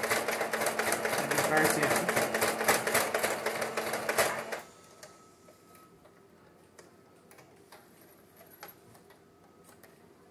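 Singer electric sewing machine running a straight stitch at speed, its needle strokes in a fast even rhythm, stopping abruptly about four and a half seconds in. A few faint clicks follow.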